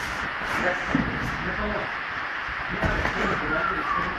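Noisy gym room sound during sparring on a mat: a steady hiss with faint background voices and two soft thumps, about a second in and near three seconds.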